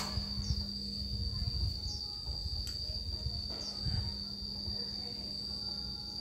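A steady, high-pitched insect trill, one unbroken tone, over a low rumble and a faint steady hum.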